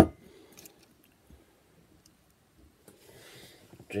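A sharp knock as the recording phone or camera is handled, followed by faint rustling and a few small clicks.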